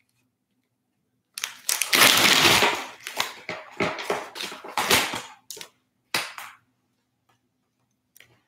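Plastic crinkling and clicking as dialysis needles and their tubing are handled close to the microphone: a dense crackle about a second and a half in, then a string of sharp clicks that stops about two thirds of the way through.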